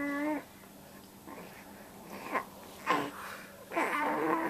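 A short, even-pitched cry at the very start, from the creature heard as Marie's baby, followed by quiet with a few faint soft sounds and one sharper short noise about three seconds in.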